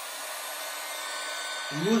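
Hot air gun running steadily: an even rush of blown air with a faint high whine from its fan.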